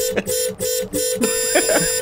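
Car horn honking: three short honks and then one long held honk.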